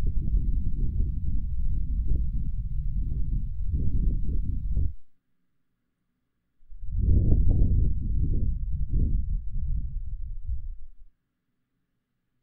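Ear blowing into a 3Dio binaural microphone: two long, slow breaths blown onto the mic's ear, heard as a low, breathy rush, each lasting four to five seconds with a silent pause between. A third breath starts near the end.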